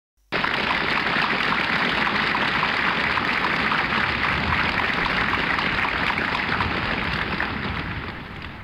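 A dense, steady rushing hiss like heavy rain, starting suddenly just after the start and easing a little near the end.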